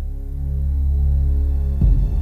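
A low, steady drone of ambient background music swells louder. Near the end a fuller, pulsing texture comes in.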